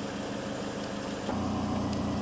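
Car engine idling with a steady hum, getting louder about a second in.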